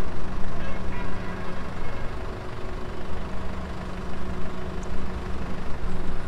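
A vehicle engine idling: a steady, even hum over a low rumble.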